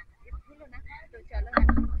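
Faint voices, then a loud low rumble on the microphone starting about one and a half seconds in, with a voice over it.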